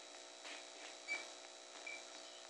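A faint, steady electrical hum with no speech, broken by a few faint short chirps, about a second in and again near the end.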